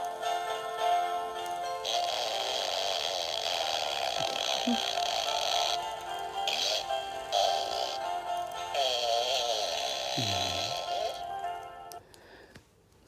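Animated singing plush poop toy playing a song with a synthetic-sounding singing voice through its built-in speaker, with little bass.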